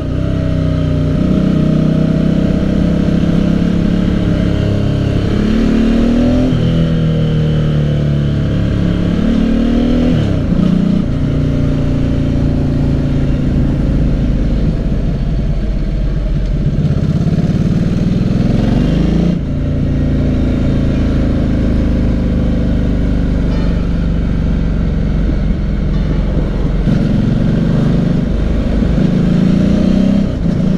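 Motorcycle engine running under way, heard from the bike itself. The revs climb and fall back several times with throttle and gear changes, the biggest swings near the start, about a third of the way in, and around two-thirds of the way in.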